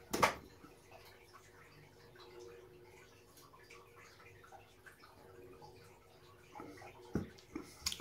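A man sipping beer from a glass, with faint slurping and swallowing over a low steady hum. A sharp click comes just after the start, and a few small knocks near the end.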